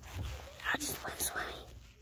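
A child whispering in short, breathy bursts.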